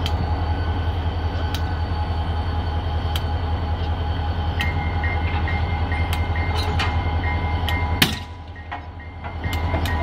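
Diesel switcher locomotive idling with a steady low engine hum while it is uncoupled from hopper cars, with scattered metallic knocks and clanks from the coupler work. A regular high beeping starts about halfway through, and near the end there is one loud sharp burst followed by a brief lull.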